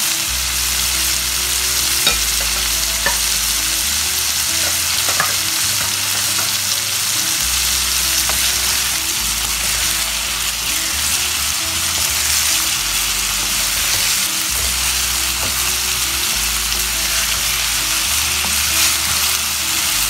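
Chicken and chopped vegetables sizzling steadily in a nonstick frying pan as a wooden spoon stirs them, with a few light clicks of the spoon against the pan.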